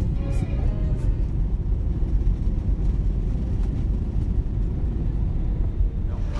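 Steady low rumble of a moving vehicle, loud and unchanging, with a little music fading out in the first second.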